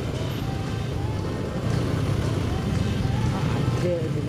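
Steady low rumble of idling motorcycle and car engines in a traffic jam, with faint voices underneath.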